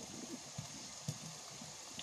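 Faint sizzling of onion and meat frying in a pan, with a few light knocks of a wooden spatula as it is stirred.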